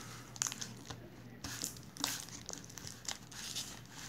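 Plastic wrapping crinkling and cardboard packaging rustling as a Fire TV Stick in its plastic sleeve is slid out of a cardboard box compartment, with irregular small clicks and rustles throughout.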